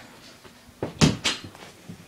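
A quick cluster of three or four knocks and bumps about a second in, the first loudest, then one faint knock near the end.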